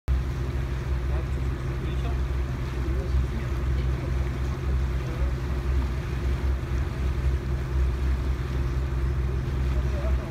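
Tour boat's engine running with a steady low hum, over the wash of lake water.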